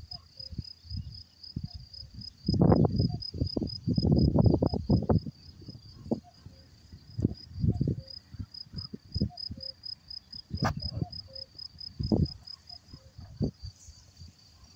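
A meadow insect chirping in a steady, high, even pulse about four times a second. Low rumbling bursts of noise come and go over it, loudest from about three to five seconds in.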